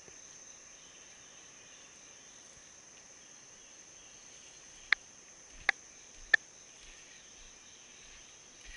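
Steady, high-pitched drone of woodland insects. Three sharp clicks come in quick succession a little past the middle, well under a second apart.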